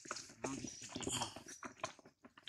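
Macaques crowding and feeding at a plate of food on dry leaves: scattered clicks, knocks and scuffling as they jostle.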